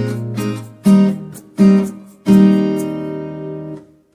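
Acoustic guitar strumming chords: single strokes about a second apart, the last chord left ringing for more than a second before it cuts off suddenly near the end.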